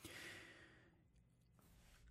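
Near silence: a faint exhale from the narrator in the first second, then quiet room tone.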